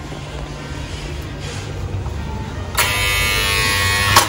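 Electric door-release buzzer buzzing for about a second and a half, starting near three seconds in, as the lock is released to let a visitor in. Background music runs underneath.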